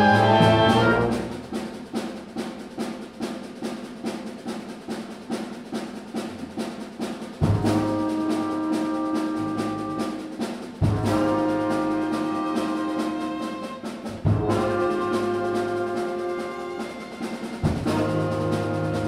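Live orchestra with a brass section playing: a loud chord fades about a second in, giving way to a quieter passage of quick repeated notes, then four sudden loud held brass chords with a deep bass, about three and a half seconds apart.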